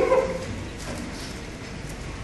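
A brief pitched vocal sound from one of the men, rising in pitch and loudest right at the start, then low room noise with a few faint sounds.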